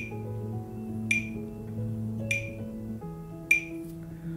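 Metronome clicking at 50 beats per minute, four even clicks about 1.2 seconds apart, each marking one beat of a 4/4 bar. Under the clicks are sustained low musical notes that shift to a new pitch about three seconds in.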